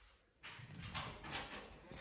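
Faint footsteps on a hard floor over a low rumble, starting about half a second in after a near-silent moment.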